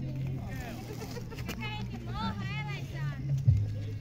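Faint voices of people talking in the background, over a steady low hum.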